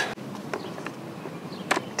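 A few light clicks and knocks of a golf push cart's plastic wheel being handled and fitted onto its axle, the sharpest near the end, over a low steady background noise.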